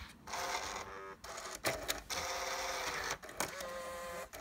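Nakamichi CD-700II car CD player's slot-loading mechanism ejecting a disc: a click, then its small motor and gears whirring in several runs, broken by sharp clicks.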